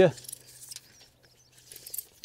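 Faint, light metallic clicks and rattles of a long tape measure being handled and pulled out, over a faint low steady hum.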